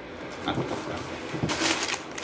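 A cardboard box being handled, then crumpled brown kraft packing paper being pulled out, with a loud rustle of paper near the end.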